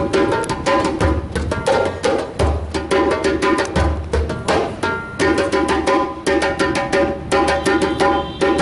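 Two djembes played with bare hands in a fast, steady rhythm: rapid sharp slaps over recurring deep bass strokes.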